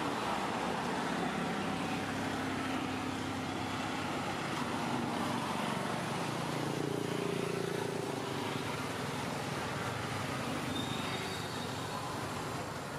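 Steady background noise of road traffic, with faint engine tones coming and going.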